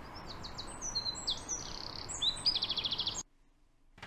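Songbirds singing outdoors: a string of clear whistled notes and glides, then a fast trill, over a steady outdoor hiss. The sound cuts off abruptly about three seconds in.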